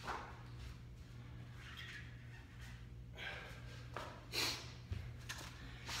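Faint steady room hum with a few short, soft noises, most likely a person moving around out of sight: one about two seconds in, one about three seconds in, a louder one a little past four seconds, and a couple of small knocks near the end.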